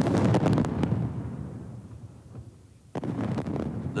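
Field guns firing: two shots about three seconds apart, each a loud boom that dies away over a couple of seconds.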